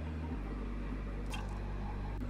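Steady hum and airy hiss of a ventilation vent blowing at full force, with one faint click just past halfway.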